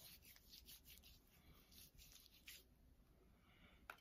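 Near silence, with faint rubbing of hands working in hand lotion and a few soft ticks.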